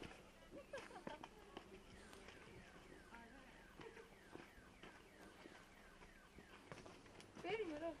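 Faint outdoor ambience: a short high chirp, falling in pitch, repeats about two or three times a second, with a few light clicks early on and brief distant voices near the end.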